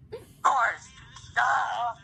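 A girl singing two short wordless vocal phrases. The first glides in pitch and the second is held for about half a second.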